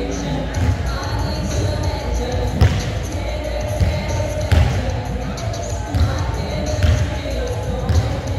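Basketball bouncing on a court: repeated low thuds roughly once a second, with a few sharper impacts at intervals of about two seconds, over a steady background of indistinct voices.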